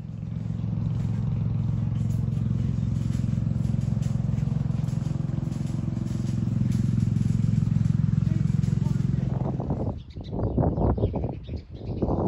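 An engine running steadily with a low, even hum for about ten seconds, growing a little louder before it stops abruptly; choppy, broken sounds follow near the end.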